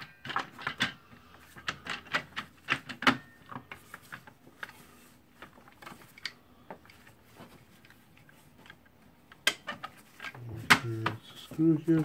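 Irregular clicks and knocks of hard plastic as the two halves of a Makita DSS610 cordless circular saw's housing are worked and pressed together by hand, the cover reluctant to seat over the controller wires.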